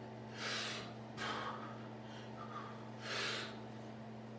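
A man breathing hard with effort, three short forceful exhalations, as he strains to bend a 3/4-inch steel bar by hand. A faint steady hum runs underneath.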